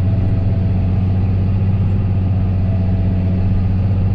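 Tractor engine running steadily, heard from inside the cab: an even, low hum that holds without change.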